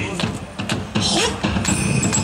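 Yosakoi dance music from an outdoor loudspeaker, thinning out briefly just after the start, with a short shouted call from the dancers about a second in and a low rumble underneath.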